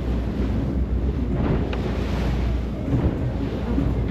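Wind noise on the microphone over the steady low rumble of a motorboat running fast across open sea, with water rushing past the hull.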